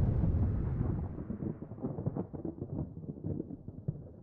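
Logo-animation sound effect: a deep whooshing rumble that dies away over a few seconds, breaking up into scattered crackles in its second half.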